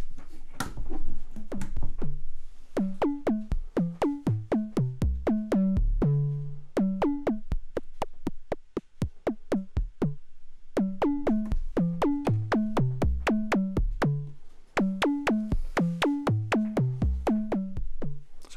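Eurorack sine oscillator of a Noise Reap Foundation kick-drum module, shaped by its own envelope through a VCA to rebuild a bass drum. It plays a sequenced run of short pitched bass hits, about four a second and changing in pitch. The hits thin to faint clicks midway, then return.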